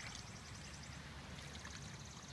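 Faint, steady rush of shallow rainwater runoff flowing as a temporary stream across a flooded lawn.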